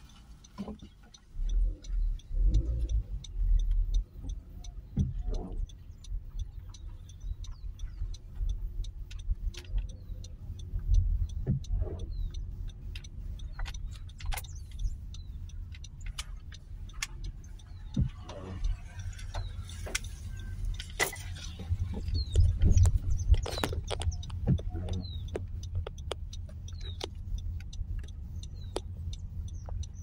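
Car cabin noise while driving: a steady low rumble of engine and tyres, with scattered light ticks and taps and a few louder low thumps.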